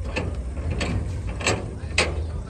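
Metallic knocks and rattles from a livestock pickup's steel bed and side gates as cattle are loaded: four sharp knocks about half a second apart, the last the loudest.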